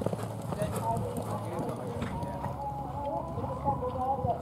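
Hoofbeats of a pony cantering across a sand arena, with voices in the background.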